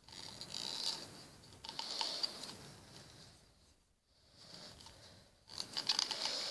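Faint rustling and scraping from handling a plastic toy cap gun during unboxing, in three short spells with a quiet gap in the middle.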